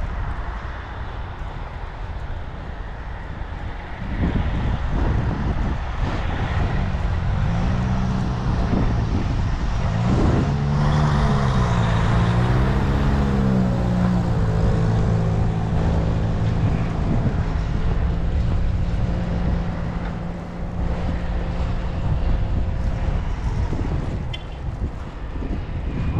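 A motor vehicle's engine: its pitch wavers up and down for a few seconds, then holds a steady hum before fading near the end, over a low rumble of wind on the microphone.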